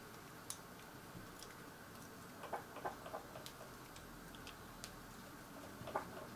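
Small screwdriver driving tiny screws into black plastic scale-model suspension parts: faint, scattered sharp ticks and clicks, with a short run of plastic clicks about halfway through.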